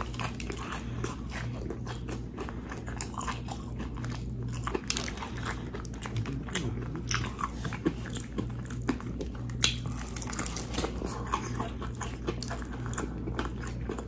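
Close-miked crunching of Popeyes fried chicken: the crispy breading crackles as the pieces are torn apart by hand and chewed, in many small crunches all through, over a steady low hum.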